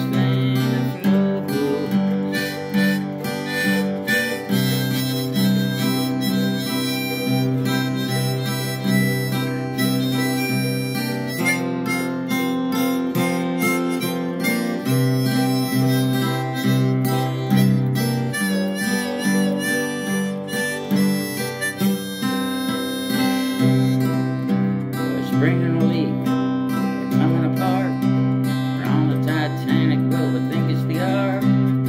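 Live acoustic music: a guitar strumming steady chords under an instrumental lead melody, with no singing.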